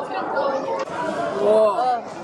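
Women's voices chattering over the murmur of a busy indoor public space, with one voice making a drawn-out, wavering sound near the end in reaction to the taste of a shot just drunk.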